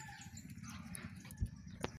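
Faint outdoor background noise, with a single soft thump about one and a half seconds in and a short click near the end.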